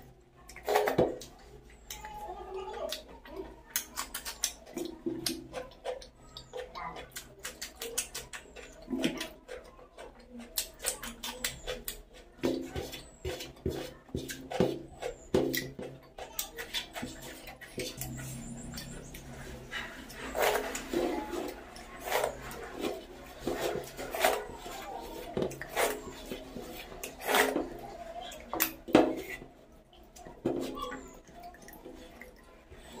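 Close-miked eating sounds of someone eating rice and curry by hand: wet chewing and lip smacking with many sharp clicks throughout, and fingers squishing food on the plate.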